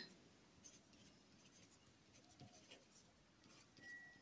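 Near silence with faint scratches of a pen writing on paper.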